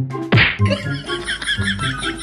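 A sudden slap-like hit about a third of a second in, over light background music. The hit is followed by a warbling, high-pitched comic sound effect.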